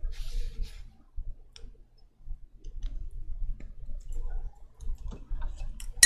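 Scattered light clicks and handling noises as a small tube of titanium white paint is taken up and opened by hand, with a brief rustle near the start.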